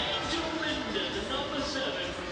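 Distant voices calling and shouting across an outdoor football pitch over the match's open-air ambience.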